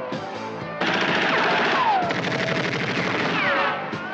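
A long burst of rapid automatic rifle fire, starting about a second in and lasting about three seconds, over film score music.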